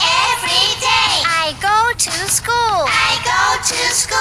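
A young girl singing a song in a high voice, the notes gliding up and down in short phrases.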